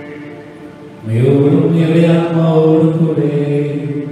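A man's voice chanting a Syro-Malabar liturgical melody, holding long sustained notes. It rises in loudness about a second in and steps between pitches.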